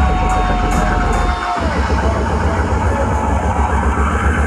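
Dubstep DJ set over a club sound system, heard from the crowd. Heavy sub-bass and a held synth tone drop out together about one and a half seconds in, then the bass comes straight back in.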